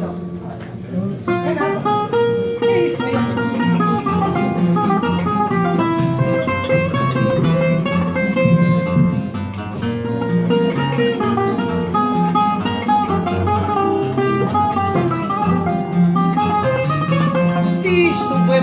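Two acoustic guitars playing a plucked instrumental passage, a picked melody over a chordal accompaniment.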